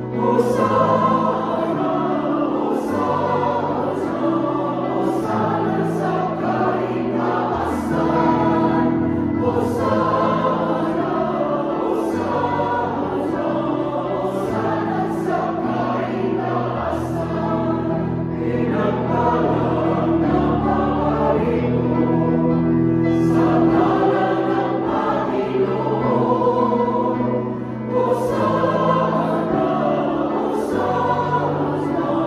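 A mixed choir singing a hymn in full chords, steady and unbroken, with held low notes underneath the voices.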